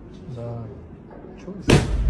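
A sudden loud blast with a heavy low thud, about a second and a half in, as a cloud of white powder bursts out over a couch. A brief grunt-like voice sounds before it.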